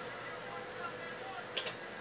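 Quiet room tone with a couple of brief clicks about one and a half seconds in.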